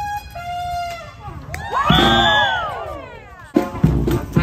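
Parade music with a held note, then a burst of whooping cheers from the crowd about two seconds in, and a strong drumbeat coming in near the end.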